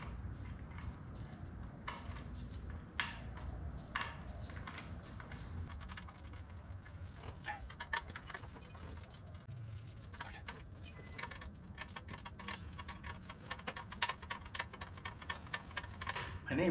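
Small metal clicks and clinks of hand tools working on the front wheel hub of a vintage motocross bike. They are sparse at first and come thick and fast in the second half, over a low steady hum.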